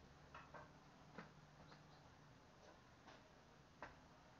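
Near silence with about seven faint, short clicks at irregular intervals, the sharpest about a second in and just before the end.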